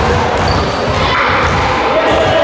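A basketball being bounced on a wooden sports-hall floor by a free-throw shooter, heard over the steady rumble and murmur of a reverberant gym.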